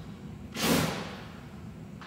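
A small cornstarch dust explosion: cornstarch blown from a funnel into a candle flame goes up in one short, loud whoosh about half a second in, fading within half a second.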